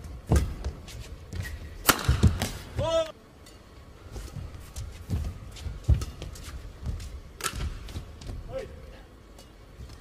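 Badminton rally: irregular sharp smacks of rackets striking the shuttlecock, with thuds of players' footwork on the court mat.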